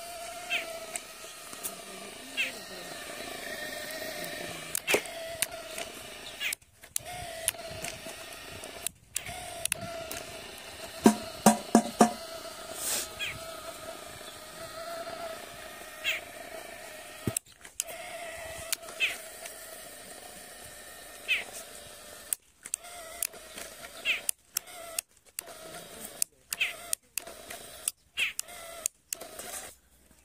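The small electric motor of a homemade RC toy tractor whines steadily under load as it strains to pull a fully loaded trolley through sand. Scattered clicks run throughout, with a few sharp knocks about eleven seconds in. The sound cuts out briefly several times, most often in the last third.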